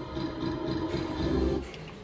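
Novoline Book of Ra slot machine's electronic reel-spin sound in a free game, a dense run of tones that grows louder and then drops away near the end as the reels stop.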